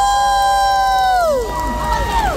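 Audience members shouting a long, high-pitched "woo" in reply to the host, two voices held for over a second and then falling away.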